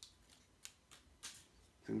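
Three faint, sharp clicks about two-thirds of a second apart from hands handling a small white plastic USB power adapter and a plastic-wrapped charging cable.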